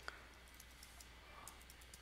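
Faint computer keyboard keystrokes, a few soft clicks over near silence, as a short terminal command is typed.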